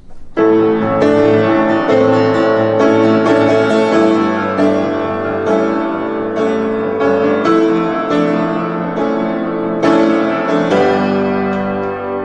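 Solo piano playing the instrumental intro of a blues song: chords struck in a steady rhythm, starting about half a second in.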